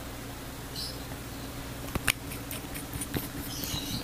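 Small wet clicks and lip smacks as liquid lipstick is worked onto the lips with its applicator wand, with one sharper click about two seconds in, over a steady low electrical hum.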